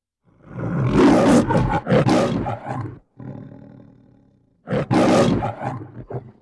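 Two loud roars, as from a big beast or monster. The first lasts about three seconds and trails off into a quieter rumble; the second comes near the end and is shorter.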